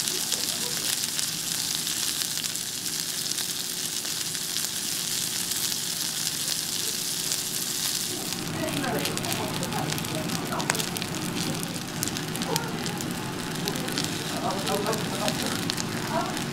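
Wagyu hamburger patties sizzling on a hot cast-iron grill pan, a dense steady sizzle. About halfway through it turns to sparser crackling and spattering as rice is fried in the hot pan.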